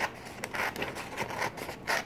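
Scissors cutting through a folded glossy catalog page: a series of short, crisp snips with paper rustling between them.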